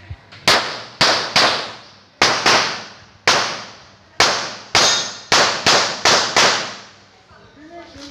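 Pistol fired in a rapid string of about a dozen shots, many in quick pairs, each crack trailing into a long echo.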